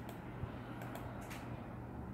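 A few faint computer mouse clicks while drawing lines in a CAD program, two of them close together a little past the middle, over a low steady hum.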